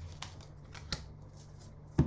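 Tarot cards being handled on a desk: a few short, soft clicks over a low steady hum, with a sharper click at the end.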